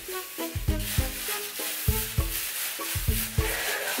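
Background music with a steady beat and short melodic notes.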